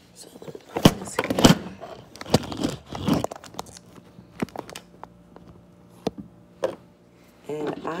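Handling noise from a phone being picked up and repositioned: a cluster of knocks and rubbing in the first few seconds, then a few lighter clicks.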